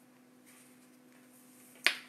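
A quiet pause with a faint steady hum, broken near the end by a single sharp click.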